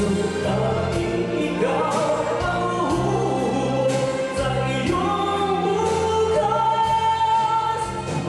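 A man singing into a handheld microphone over a backing track with bass and drums, holding long notes in the second half.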